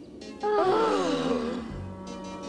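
A weary, falling groan of tired cartoon characters, starting about half a second in and lasting about a second, over a soft sustained music score.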